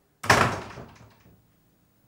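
A panelled wooden door shut hard, a single loud bang about a quarter second in that rings away within about a second.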